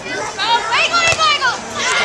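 Excited high-pitched shouting and cheering voices during a beach volleyball rally, rising and falling for about a second. One sharp smack cuts through about a second in.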